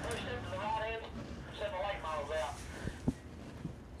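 Faint background voices of people talking, over a low murmur of ambient noise, with a single short knock about three seconds in.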